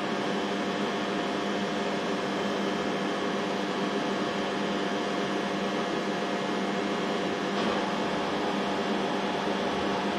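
Steady machinery hum made of several constant pitched tones over a low even noise, unchanging in level.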